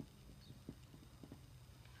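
Near silence with a few faint ticks of a dry-erase marker stroking across a whiteboard as letters are written.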